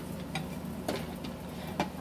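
A few light clicks and taps, one every half second or so, over a low steady hum.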